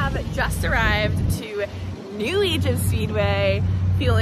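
A woman talking to the camera over a steady low hum that briefly drops away about a second and a half in.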